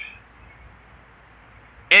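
A pause between a man's sentences: faint, steady background noise with no distinct sound, his voice cutting back in near the end.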